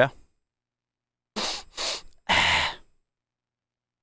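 A man's voice: three short, breathy vocal sounds in quick succession, with no guitar playing around them.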